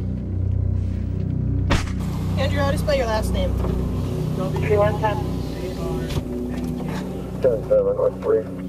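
A low musical drone, broken by a sharp click about two seconds in. Then the steady hum of a vehicle idling, heard from inside the cab, with indistinct voices over it.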